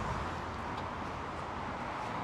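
Steady low background noise with no distinct event in it.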